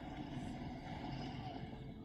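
A faint, steady low rumble of background ambience.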